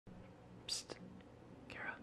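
Faint whispering: a short hiss about two-thirds of a second in and a breathy whispered sound near the end, over a low steady room hum.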